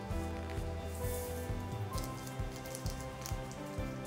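Background music with sustained, held chords.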